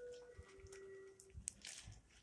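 Near silence: faint room tone with a few faint steady tones and a single light click about one and a half seconds in.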